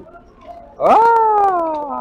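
A single long call, nearly a second and a half, starting a little before the middle: it rises sharply in pitch, then slides slowly down.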